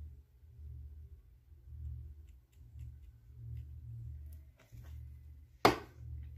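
Faint handling sounds of hands working glue onto a crocheted baby shoe over a low, wavering hum, then one sharp knock on the table near the end.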